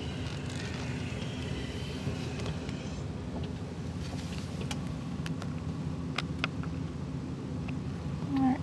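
Car driving slowly, heard from inside the cabin: a steady low engine and tyre rumble. A few sharp clicks come through about halfway in.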